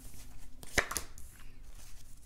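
Tarot cards being dealt onto a wooden tabletop: soft slides and light taps, with one sharp tap a little under a second in.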